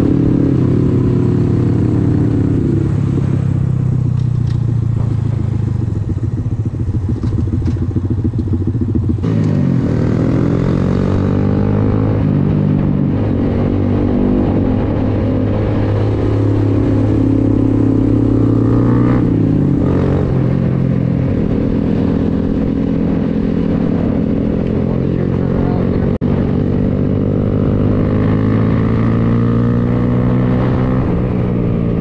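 Honda Grom's 125 cc single-cylinder four-stroke engine heard on board while riding. Its pitch rises and falls with the throttle and gear changes, with clear dips and climbs about nine seconds in and again near twenty seconds.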